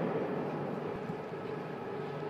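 Steady industrial hum of factory machinery in a large production hall, with a low constant drone. At the very start the tail of a knock from just before is dying away.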